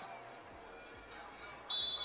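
A basketball bouncing faintly on the court over low arena crowd ambience. Near the end a brief high, steady tone starts.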